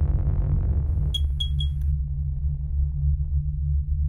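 Synthesized logo sting: a steady deep electronic drone, with a quick run of three high pings a little over a second in.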